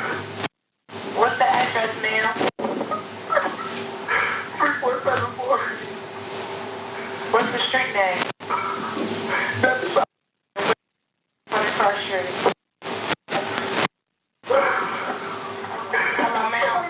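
Recorded 911 emergency call played back: voices over a phone line with a steady hum underneath. The recording cuts out abruptly to silence several times.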